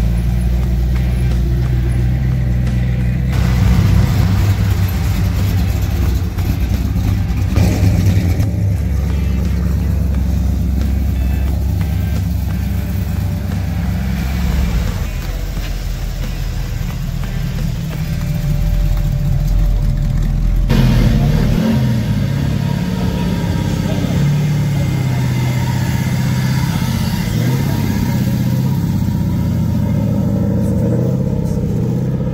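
Cars driving slowly past one after another, their engines running at low revs. Among them are classic cars, including a 1930s Chevrolet sedan and an early-1960s Chevy II convertible, and a Mazda Miata. The engine sound changes abruptly a few times as one car follows the next.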